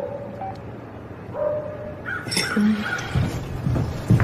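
A dog whining, a thin steady whine lasting under a second, then another for about a second, with some low knocks near the end.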